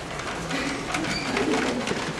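A person laughing in a run of short, cooing vocal sounds starting about half a second in.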